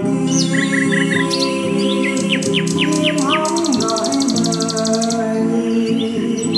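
Birdsong over sustained instrumental music: a bird gives a run of quick falling chirps, with a fast, even trill about a second and a half long in the middle.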